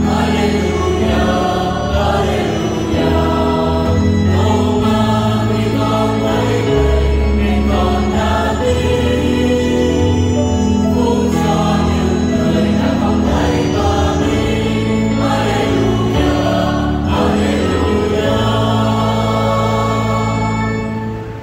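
Mixed church choir singing a hymn in parts, with sustained organ-style chords from an electronic keyboard underneath.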